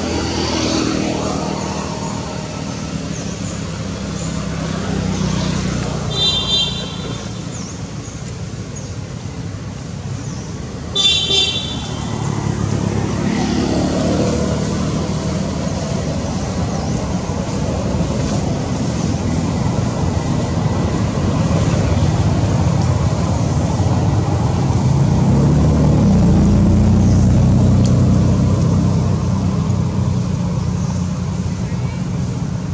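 Motor traffic going by: a steady low engine rumble that grows louder near the end, with two short high-pitched toots, one about six seconds in and one about eleven.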